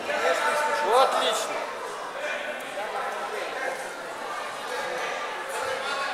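Indistinct voices of spectators and coaches calling out in a large, echoing sports hall. One loud shout rises in pitch about a second in, over a background of crowd chatter.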